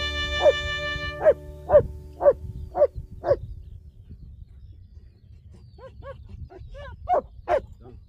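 German shepherd barking at a steady two barks a second through the first three seconds or so. After a short lull there are a few more barks near the end.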